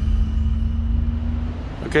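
A steady low rumble with a faint hum over it; the hum stops shortly before a man says "Okay" at the very end.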